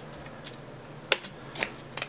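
A handful of light clicks and taps from hands handling small objects on a desktop, the sharpest a little past halfway.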